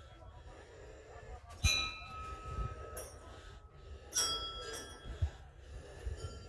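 Small hanging temple bells struck twice, about a second and a half in and again past four seconds, each strike ringing on with a clear high tone that fades away.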